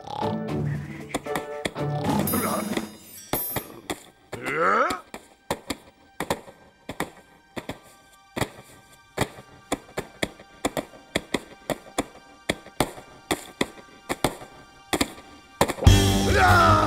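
Carpet being beaten: a long run of sharp thwacks, about two a second, over music. Before the beating starts, about four seconds in, there is a rising glide.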